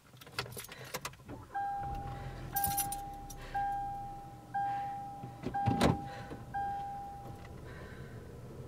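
A Hyundai car's warning chime sounding six times, about once a second, each a steady tone just under a second long. Keys rattle and click around it, and a sharp knock near the middle is the loudest sound.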